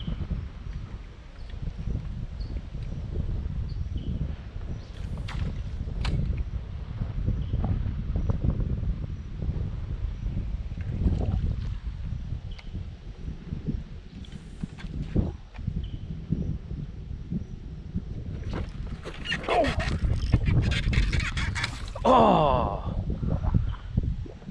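Wind rumbling on the microphone, uneven and low. Near the end come a few short pitched sounds like a voice, one of them falling steeply.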